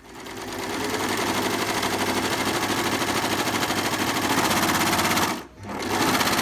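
Overlock (serger) sewing machine running fast as it stitches along the edge of plaid fabric, with a rapid, even stitching rhythm. It builds up speed over the first second and breaks off briefly about five and a half seconds in before running again.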